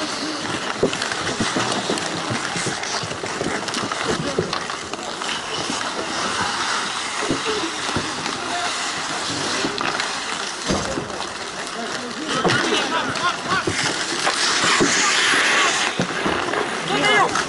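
Ice hockey play on an outdoor rink: skate blades scraping the ice and short knocks of sticks and puck, with indistinct shouting from players that grows louder near the end.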